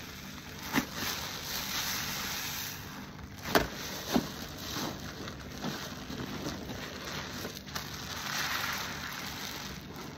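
Gloved hands squeezing and kneading a car wash sponge soaked in detergent foam: continuous wet squishing and fizzing lather, with a few sharper squelches, the loudest about three and a half seconds in.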